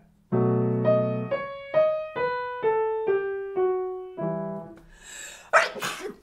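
Piano played slowly: a low left-hand chord held under a right-hand melody that steps mostly downward, about two notes a second, ending on a chord. Near the end comes a sneeze.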